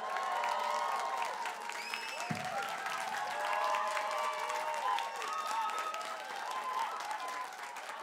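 Theatre audience clapping and cheering after a song, with many voices whooping and calling out in rising and falling shouts over the steady applause.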